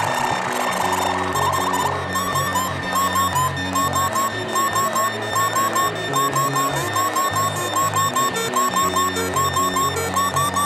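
littleBits Synth Kit, a Korg-designed analog synth, playing a looping four-step sequencer pattern of stepped oscillator notes through its small speaker module, with the delay added. From about two seconds in, short chirping blips repeat a few times a second over the looping notes.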